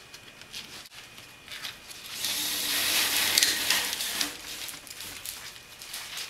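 Danish paper cord being pulled through the seat weave and rubbing against the other wraps: light rustling, then a longer sliding hiss about two seconds in that lasts a couple of seconds before easing back to rustles.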